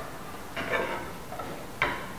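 A glass jar and a small plastic bottle being handled on a tabletop: a soft handling sound about half a second in, then one sharp click near the end as the jar is lifted and tipped toward the bottle.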